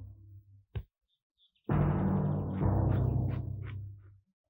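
Dramatic film-score music: a deep, ringing percussion hit fading away, a short click, then a second sudden deep hit about a second and a half in that swells once and dies away near the end.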